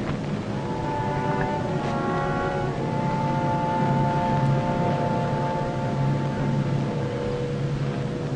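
Suspenseful background music of long held notes over a low drone, with a brief cluster of higher tones between about one and three seconds in.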